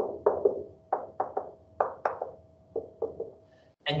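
Dry-erase marker tapping and striking against a whiteboard while a diagram is drawn and a dashed line is dotted in: about a dozen sharp taps, in quick clusters of two or three.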